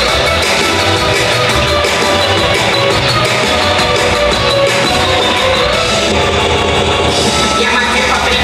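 Loud recorded backing music for a stage dance performance, with a steady, pulsing bass that comes in right at the start.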